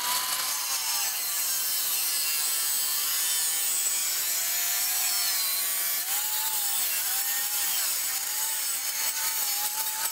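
Angle grinder with a 4-inch diamond multi-purpose cutting disc slicing through square steel tube: a steady, hissing grind over the motor's whine, which sags slightly now and then as the disc bites.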